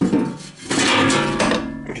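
Metal back panel of a screw machine's cabinet being pulled off: a clatter as it comes loose, then the flexing panel rings and rattles for about a second.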